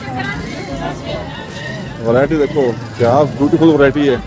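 Shoppers' voices talking at a busy street-market clothes stall, louder from about halfway through, over a steady background of street traffic.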